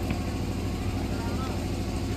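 Steady low hum under an even hiss, with no clear voice or event standing out.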